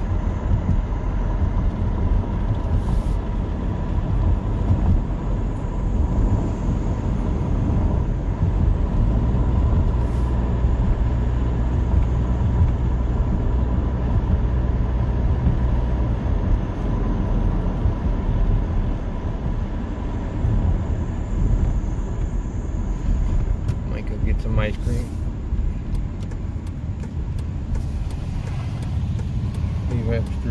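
Car driving, heard from inside the cabin: a steady low rumble of engine and road noise that grows heavier for several seconds in the middle, with a faint steady high tone running under it.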